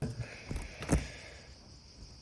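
Handling noise of a handheld smartphone filming in a quiet room: a faint steady hiss with two soft knocks, about half a second and one second in, the second the louder.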